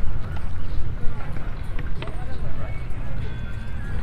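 Walking footsteps and indistinct voices of passers-by over a heavy low rumble, with scattered short clicks.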